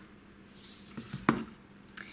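Hands handling an iced cake board on a tabletop: a faint rustle, then one sharp tap a little over a second in.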